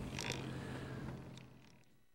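Quiet background noise aboard a sportfishing boat: a steady low hum with some hiss and a few faint clicks, fading out to silence near the end.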